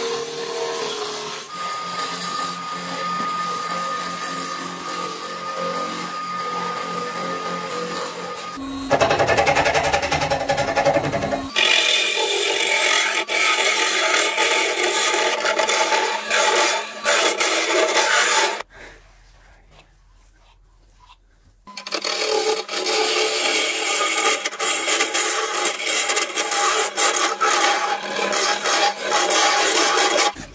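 Wood lathe running while steel turning tools cut a spinning wood blank: a gouge shaving the outside, then a hollowing bar scraping into the end. The cutting comes in several runs of different pitch and loudness and drops out briefly about two-thirds of the way through.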